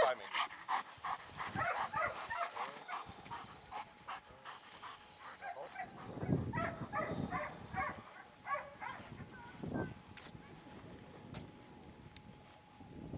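A German Shepherd barking in quick runs of short barks, thinning out to a few scattered barks in the last few seconds.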